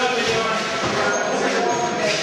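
Indistinct chatter of several people talking at once, with no words clear.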